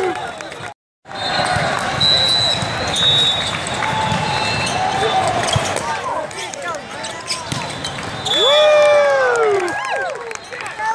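Indoor volleyball rally in a large hall: the ball being struck and shoes squeaking on the court over spectator chatter. The sound cuts out briefly just under a second in. Near the end, players shout together loudly as they celebrate winning the point.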